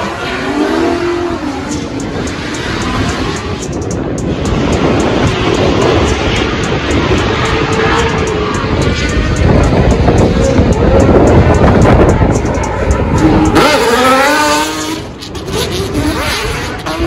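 Drift cars sliding at high revs, engines revving hard over continuous tire squeal from spinning, smoking rear tires, growing louder toward the middle, with revs rising again near the end.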